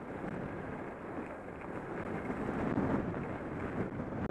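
Wind rushing over the camera's microphone as a skier descends a groomed run, mixed with the hiss of skis on snow; a steady rushing noise that swells a little partway through.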